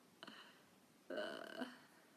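A woman's soft, breathy exhalations, a faint short one and then a longer one about a second in, like a quiet laugh let out through the mouth.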